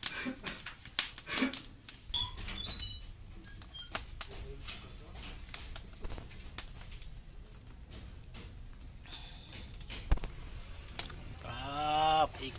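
Fish grilling in a wire basket over a charcoal and wood fire, with scattered crackles and clicks. A few short bird chirps come about two seconds in, and a voice starts near the end.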